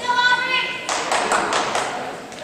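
A high-pitched held shout from a spectator, which bends slightly at its end. About a second in it gives way to a short burst of clapping and cheering in the gym.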